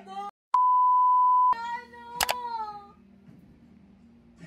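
A single steady electronic bleep tone, about a second long, starting just after a brief dead-silent cut and stopping abruptly.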